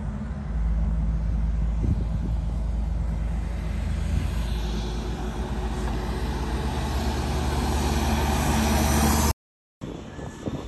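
Heavy truck diesel engine, from a Freightliner Argosy cab-over, running with a steady low drone. A road-noise hiss builds as the truck approaches, then the sound cuts off abruptly near the end.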